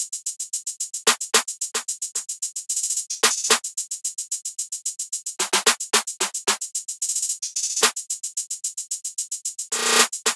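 A programmed trap drum loop at 111 BPM, with no bass or melody. Fast hi-hats tick steadily, breaking into rolls in places, under a bouncy clap pattern whose hits are set at several different pitches.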